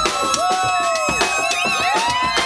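Live band playing loud: a drum kit beat under electric guitar notes that bend up and down.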